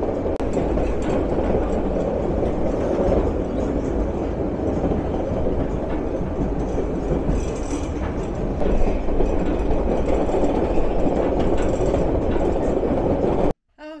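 White Pass & Yukon Route narrow-gauge passenger train rolling along its track toward Skagway, heard from an open car platform. A steady rumble of wheels on rail with light clickety-clack and wind, which cuts off suddenly near the end.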